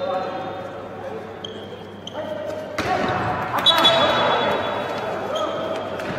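A referee's whistle blowing one long blast a little after halfway, shortly after a loud thud of the handball, with players' voices shouting in an indoor sports hall.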